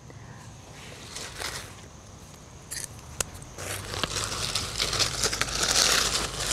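Dry leaf litter crackling and rustling under hands on the forest floor, with a few sharp snaps. It is faint at first and grows louder and denser from about halfway in.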